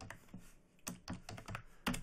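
Typing on a computer keyboard: a quick run of separate keystrokes, with two close together near the end.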